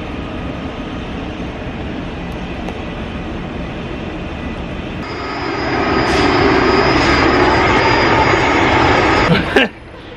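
Steady noise of nearby construction machinery running. It grows louder about halfway through, with a thin high whine joining it, then cuts off just before the end.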